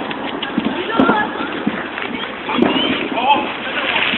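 Indistinct voices of several people talking and calling out over a steady noisy background, with a couple of faint sharp clicks.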